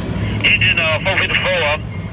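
A person's voice, speaking for about a second and a half, over a steady low rumble.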